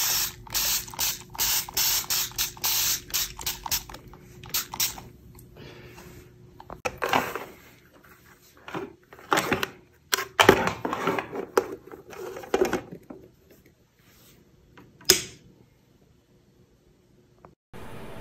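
Trigger misting spray bottle spraying 6% hydrogen peroxide onto a comic book's back cover: a fast run of short hissing sprays, about three a second, for the first several seconds. Later come handling knocks and a single sharp click.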